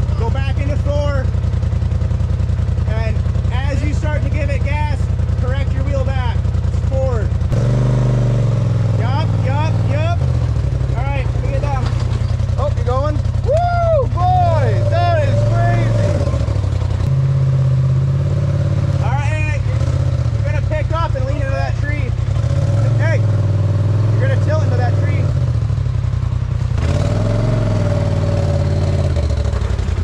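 Polaris RZR side-by-side's turbocharged twin-cylinder engine running at low revs while crawling down a steep rock ledge, its note stepping up and down a few times as the throttle is worked. Muffled voices come and go over it.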